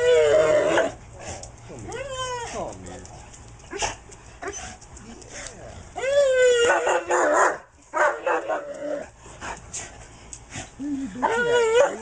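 German Shepherd dog whining and yelping excitedly in several bursts, each one quickly rising and falling in pitch.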